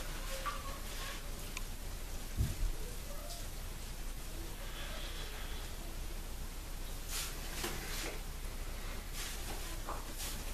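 Mostly quiet bathroom room tone with a low hum, and faint soft rustles of a hot wet towel being held and pressed against the face. One short, low thump comes about two and a half seconds in.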